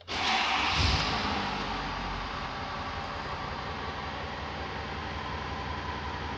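A 2021 Ford F-250's 6.7-liter Power Stroke V8 diesel starting at once, loudest in the first second or so, then settling to a steady idle, heard from inside the cab.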